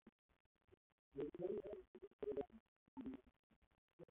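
A man's voice talking quietly in short phrases, faint and dull-sounding.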